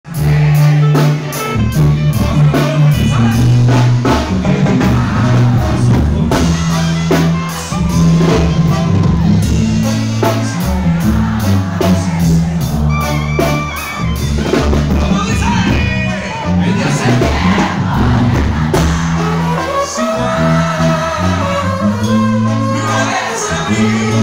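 Mexican brass banda playing live: clarinets and trumpets over a tuba bass line and drums, with voices singing.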